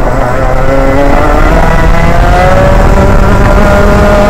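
Rotax Max 125 single-cylinder two-stroke kart engine accelerating out of a corner, its note rising steadily over the first two seconds or so and then holding high.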